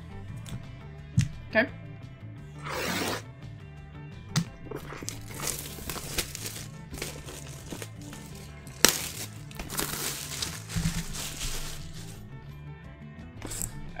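Plastic wrapping crinkling and cardboard gift-style boxes being handled, with a few sharp clicks and knocks and several rustling stretches, over steady background music.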